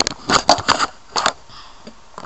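Handling noise on the camera's microphone: about five irregular rustles, scrapes and knocks in two seconds as the camera is covered and moved about.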